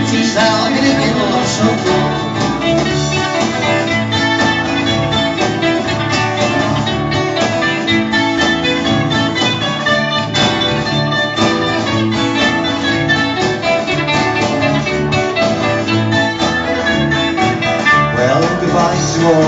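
Instrumental break of a lively Irish folk song played live: strummed acoustic guitar with keyboard backing, keeping a steady rhythm.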